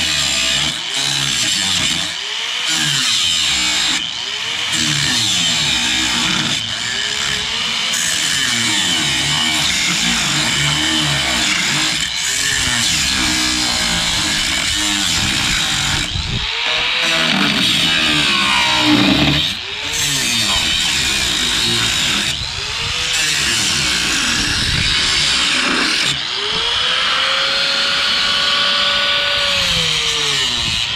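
A power tool running loudly under load, its pitch sagging and recovering again and again, roughly every one to two seconds, as it bites into the work, with a steady hiss throughout.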